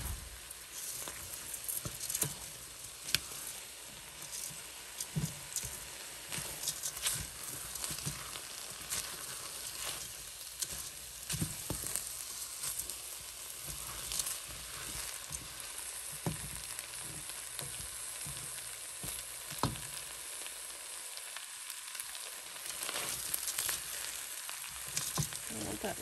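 Raw rice with sliced sausage and chopped bell peppers, onion and celery sizzling in a stainless steel pot, stirred constantly with a wooden spoon that scrapes and clicks against the pot. The rice is being cooked dry before broth goes in and is kept moving so it does not burn.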